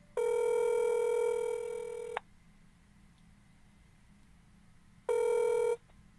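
Telephone ringback tone on a call: one steady buzzy ring about two seconds long, then a second ring about five seconds in that lasts under a second. The call is ringing through to voicemail.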